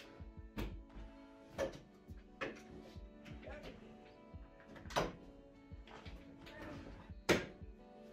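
Background music, with a few knocks and thuds from the Yamaha CLP725 digital piano's cabinet as it is tipped upright and set down on its legs; the loudest thud comes near the end.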